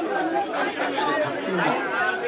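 Speech only: a man talking in Bengali into microphones, with a room echo.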